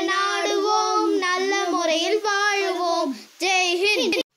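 A child singing a Tamil patriotic song about the national flag, with no instruments heard. The notes are held and wavering, with one short breath break a little past three seconds in.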